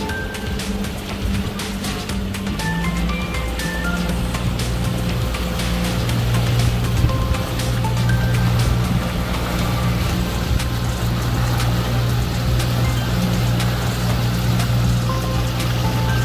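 A small outboard motor running steadily as the catamaran boat moves across the water, growing louder about four to six seconds in, with the rush of water and wind. Background music with a melody plays over it.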